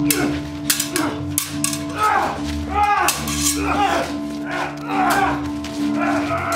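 Stage sabres clashing in quick, irregular metal strikes as two fighters duel, with the fighters' grunts and shouts in between. A steady low musical drone runs underneath.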